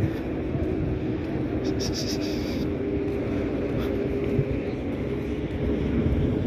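Traffic noise with bus engines running: a steady low rumble with an even engine hum through it.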